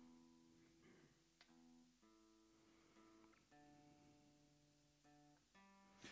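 Acoustic guitar being tuned: single strings plucked faintly one at a time and left to ring, the pitch shifting between plucks as the tuning pegs are turned.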